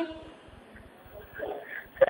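A short pause in speech with a low background hiss; a little past the middle a faint, muffled voice comes through briefly.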